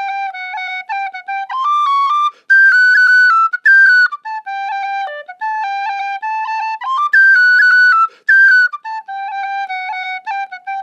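Lír D tin whistle, solid brass with chrome plating, played as a tune: a clear, pure tone running through quick notes that jump back and forth between the low octave and the second octave, with short breaths between phrases.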